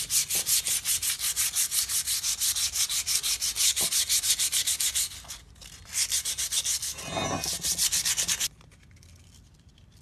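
Sandpaper (60-grit) dry-sanding a rusty steel stabilizer bar by hand in quick back-and-forth strokes, several a second, taking off rust and gritty high points to bare steel. The strokes pause briefly about five seconds in and stop about eight and a half seconds in.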